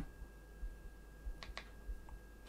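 Faint clicks of a Panasonic Lumix S5's rear control buttons being pressed to step through and select a menu item, two sharp clicks close together about one and a half seconds in.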